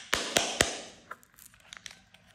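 Pink plastic popsicle-shaped toy case being prised open by hand: three sharp plastic clicks in the first second over a crackling rustle that fades, then a few faint ticks.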